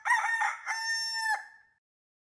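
A rooster crowing once: a few short broken notes, then one long held note that drops away about a second and a half in.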